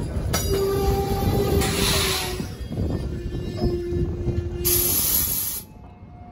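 Passenger train coaches rolling past at close range: a steady rumble of wheels on rail, with a few short, steady high notes and two bursts of hiss about two and five seconds in. The sound cuts off suddenly near the end.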